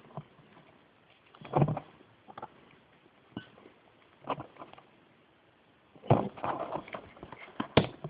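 Scattered light clicks and knocks of steel connecting-rod caps and polished bearing shells being handled and pressed into place on a bench, with a busier run of knocks and rustling near the end.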